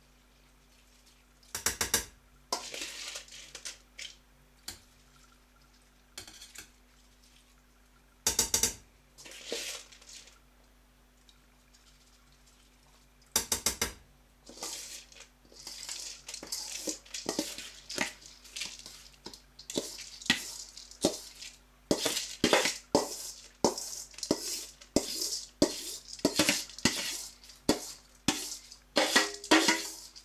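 A metal bowl clinking against a steel cooking pot as washed rice is tipped and scooped into the zirvak for plov. There are three sharp, ringing clinks in the first half, then a quick run of knocks and clatter with rice rustling and sliding in.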